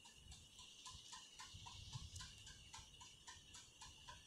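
Near silence: room tone with a faint, rapid, regular ticking, about five ticks a second.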